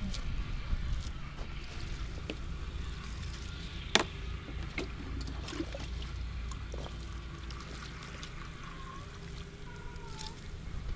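Water poured from a small bucket onto bare garden soil, with the knocks of buckets being carried and a sharp click about four seconds in, over a low steady rumble.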